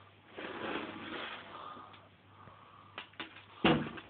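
A broom pushed across a wooden floor with a cat on it: bristles scraping and rustling in uneven strokes, then a few clicks and a heavy thump near the end.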